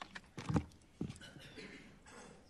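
Microphone handling noise: a few knocks and thumps as equipment is handled and passed at a lectern, the loudest about half a second in and another at about one second.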